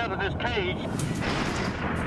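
A person's voice, then a burst of rushing noise from about a second in.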